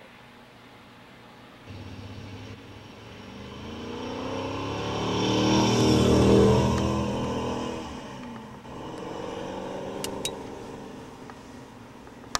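A motor vehicle engine passing by: it swells to a peak about six seconds in, then its pitch drops and it fades away. Two sharp clicks come near the end.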